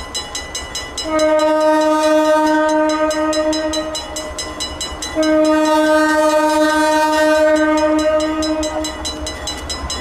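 Air horn of an approaching Alco diesel road-switcher locomotive sounding two long blasts, the second starting about five seconds in, over the low rumble of the engines.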